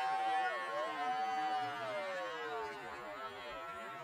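A shofar sounding one long held note. About half a second in the note wavers, then it slides slowly down in pitch and dies away about three seconds in.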